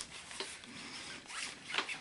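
A cardboard laserdisc gatefold jacket being handled and opened: faint rubbing and sliding of card against card, with a couple of light ticks.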